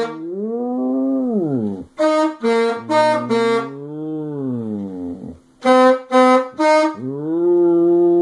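Saxophone playing short detached notes in groups of three or four, with a dog howling between them in long notes that rise and then fall in pitch. The howl in the middle starts while the saxophone is still playing, and another begins near the end.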